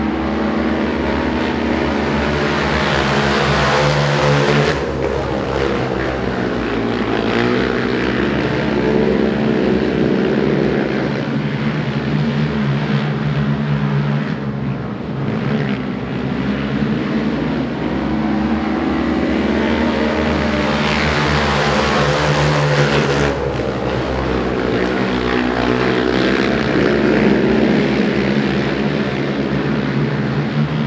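Three speedway racing quads' engines running hard around a dirt oval, the pitch rising and falling as they power out of the corners and ease off into them. The sound swells twice as the pack passes close: a few seconds in, and again a little past two-thirds of the way through.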